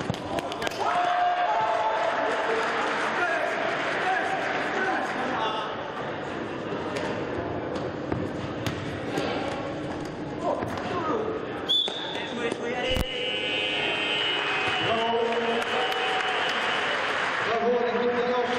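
Indoor futsal match in a sports hall: many voices shouting over one another, with thuds of the ball being kicked and bouncing. About two-thirds of the way in, a high tone is held for a few seconds.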